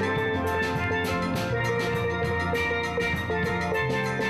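A steel band playing: several steel pans struck with sticks in a quick, even rhythm, ringing pitched notes over a bass line.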